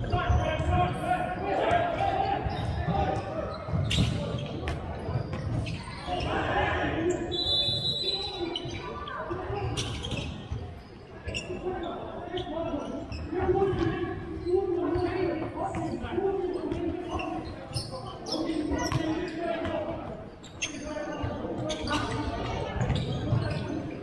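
Futsal ball being kicked and bouncing on a wooden sports-hall floor: repeated sharp thuds that echo in the large hall, with players calling out to each other throughout.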